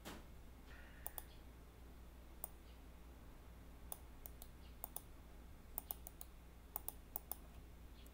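Faint key presses on a computer keyboard as a short command is typed: a couple of clicks about a second in, then a scattered run of about a dozen keystrokes from about four seconds in.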